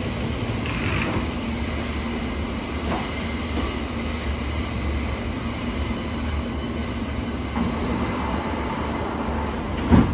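London Underground S7 stock train standing at the platform with a steady electrical hum and high whine. Near the end its sliding doors close, ending in one sharp thump as they shut.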